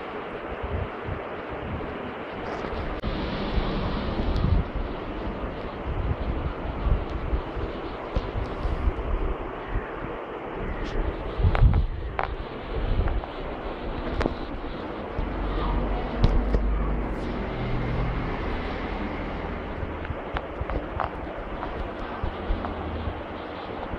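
A steady rushing noise on a handheld phone's microphone, with irregular low bumps and a few light clicks of handling as the camera is moved about.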